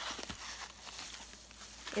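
Soft, irregular rustling and handling noise of white packing wrap as a wrapped leather shoulder strap is lifted out and handled.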